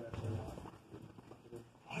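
Quiet, indistinct voices murmuring.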